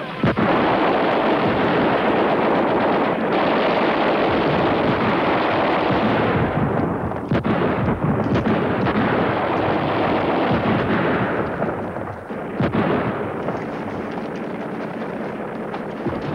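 Heavy battle gunfire: a dense, continuous barrage breaks in sharply about a second in, with a few single sharp shots standing out. About twelve seconds in it eases to a lower, thinner level.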